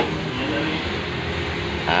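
Sandpaper scraping steadily over dried body filler on a van's side panel as it is smoothed by hand, with a sharp click at the very start.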